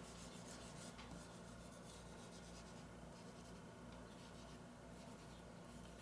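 Faint rubbing of a whiteboard eraser wiping marker off the board, over a low steady hum.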